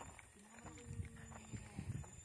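Faint voices of people talking some way off, with a few soft clicks.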